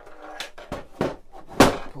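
A few knocks from a plastic toy playset being handled, with a louder thud about a second and a half in as it is set down.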